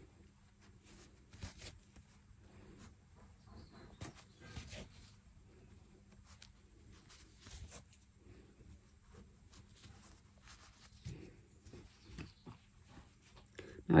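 Faint, scattered rustles and soft taps of hands handling a crocheted doll and drawing yarn through the crochet fabric while sewing an arm onto its body.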